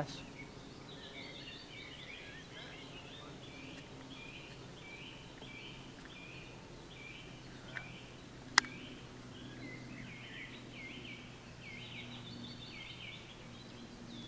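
Birds chirping outdoors, a long string of short repeated high notes, over a faint steady low hum. A single sharp click a little after the middle is the loudest moment.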